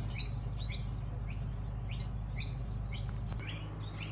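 Small aviary birds chirping: a series of short, high chirps, two or three a second.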